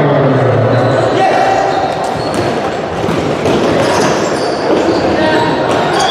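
Futsal play in an echoing sports hall: a din of voices calling, with the ball thudding as it is kicked and bounced on the wooden floor, the strikes coming more often in the second half.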